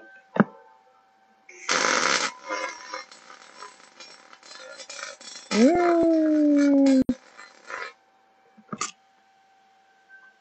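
MIG/MAG welding arc crackling through a vertical (3G) weld run with the inductance set to 7. The arc strikes about a second and a half in with a loud burst of crackle and cuts off just before eight seconds. A drawn-out tone that rises and then slowly falls sounds over the arc around the middle.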